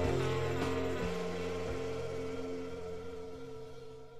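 The end of a 1972 hard rock song fading out: held chords ring on, with a couple of note changes, and steadily die away.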